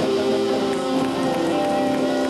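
Electric guitar played live, letting long notes ring and hold.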